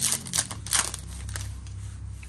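Foil-plastic wrapper of a 2020 Topps Archives baseball card pack crinkling as it is torn open and pulled off the cards, in a few short crackling bursts in the first second. Quieter handling follows.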